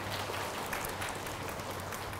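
Room tone of a large, crowded assembly hall heard through a microphone: a steady hiss with a faint low hum and no distinct events.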